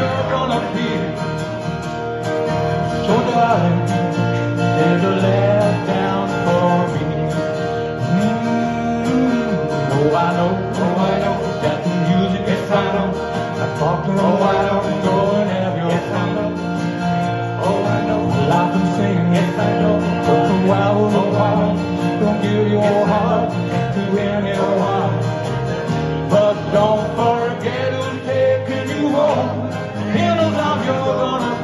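Live band music: acoustic guitars strummed steadily while men sing lead vocals through microphones and a PA.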